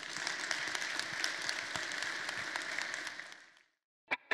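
Audience applauding at the end of a conference talk: a steady patter of many hands clapping that fades out near the end.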